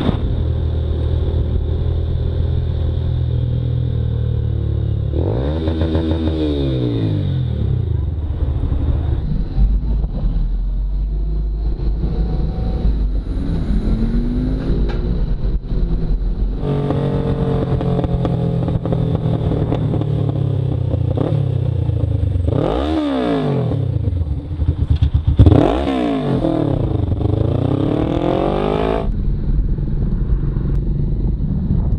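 Motorcycle engine running under the rider, its pitch sweeping down and back up several times as it revs through gear changes, over steady road noise. The sound changes abruptly about halfway through.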